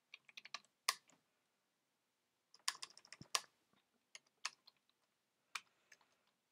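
Keystrokes on a computer keyboard, typed in bursts: a quick flurry in the first second, a pause, a rapid run around the middle, then a few scattered single keys near the end.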